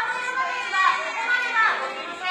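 A beluga whale's speech-like calls: a run of high, voice-like notes that slide up and down in pitch, starting suddenly.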